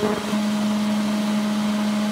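Steady low electrical hum of an induction cooktop heating a steel pot: one even tone, unchanged throughout.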